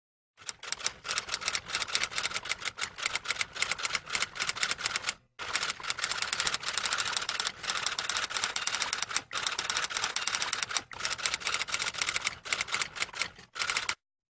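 Typewriter sound effect: rapid runs of key clacks, broken by a clear pause about five seconds in and a few shorter breaks.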